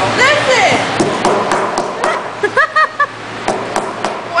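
Several sharp taps and knocks of a utensil striking a rock-hard brownie on a paper plate as someone tries to cut it. The brownie is so overcooked it knocks like something solid.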